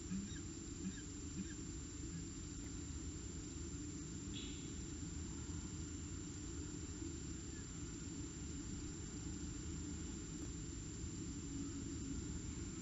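Steady low rumble of background noise on a nest-box webcam's microphone, with a few faint clicks in the first second or so and one brief faint high chirp about four and a half seconds in.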